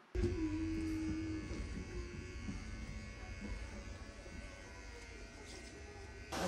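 Electric hair clippers buzzing steadily, the sound slowly fading.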